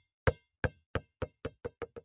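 A ball bouncing on a hard surface, each bounce quieter and quicker than the last as it comes to rest.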